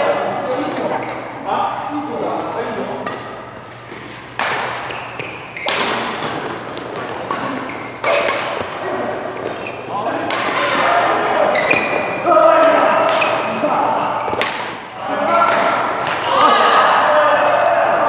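Badminton rackets hitting a shuttlecock back and forth in a doubles rally, sharp cracks about every one to two seconds, echoing in a large hall. Voices talk and call out over the play.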